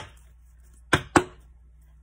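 Deck of oracle cards tapped and set down on a hard tabletop: a sharp tap at the start, then two quick taps close together about a second in.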